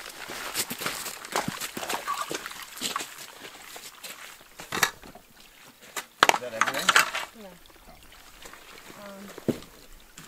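Knocks and clatter of gear being handled as a canoe is loaded at the water's edge, with the loudest knocks about five seconds in and between six and seven seconds in. Brief indistinct voices come through in between.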